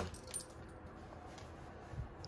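A few light clicks and a faint jingle in the first half second, then quiet room noise: the small sounds of dogs moving about on a hardwood floor by their food bowls.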